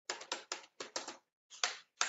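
Computer keyboard typing: an irregular run of keystroke clicks, a few a second, as a word is typed.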